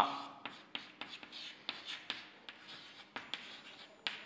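Chalk writing on a chalkboard: a run of short taps and scratches as characters are written.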